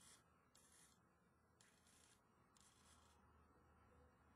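Near silence, broken by four faint, brief high-pitched whirrs from the helicopter's micro servos tilting the swashplate during a fore-and-aft cyclic check.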